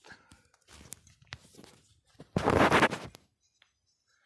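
Handling and movement noises with light knocks and rustles while a knife is being fetched, then one loud scraping noise lasting under a second about two and a half seconds in.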